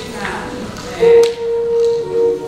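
Church keyboard playing long, steady held notes, with a louder note coming in about a second in.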